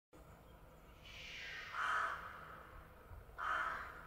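Two crow caws about a second and a half apart, over a faint rushing background: a logo sound effect.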